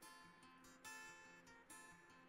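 Faint background music: an acoustic guitar strumming, with a fresh strum about every second.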